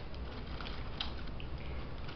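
Faint rustling and small clicks of fingers working loose a thin ribbon tied around a cardboard gift box, with a slightly sharper click about a second in.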